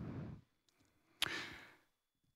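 A man's single breath into a close handheld microphone, starting with a short click about a second in and fading within about half a second.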